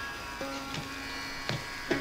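Soft Carnatic accompaniment between vocal phrases: the violin holds one quiet, steady note over a faint drone, with a few light mridangam strokes.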